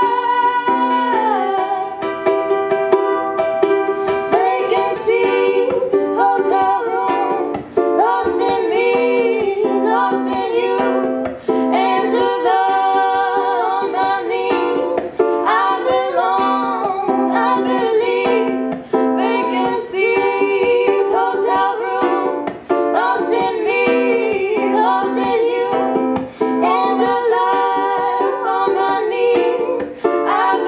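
Two female voices singing a song in harmony to a ukulele accompaniment, with the sound of a small room.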